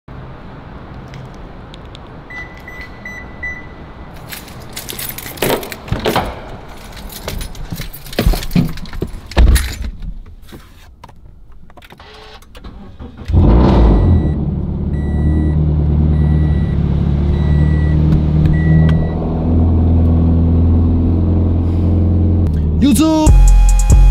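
Keys jangling and a few short beeps, then car doors and handling knocks, and the Subaru BRZ's flat-four engine is push-button started about halfway through: it catches with a sudden loud burst and settles into a steady idle while a dashboard chime beeps repeatedly. Music with a beat cuts in near the end.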